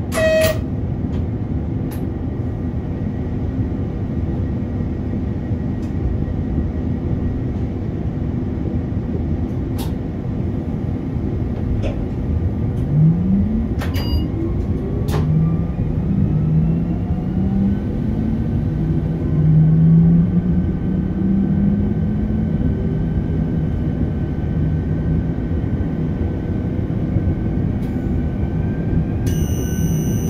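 Cab of a Škoda RegioPanter electric multiple unit under way: steady running rumble with a few clicks, and a whine from the electric traction drive that rises in pitch about twelve seconds in as the train picks up speed, then holds and keeps climbing slowly. A high electronic tone sounds near the end.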